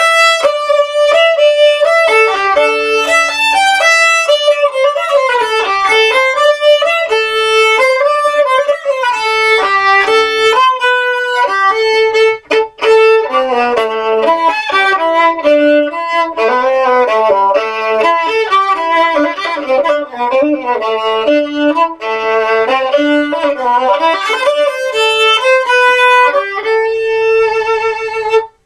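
Violin played with a bow, a fast melody of quickly changing notes with a brief break about twelve seconds in, ending on one long held note.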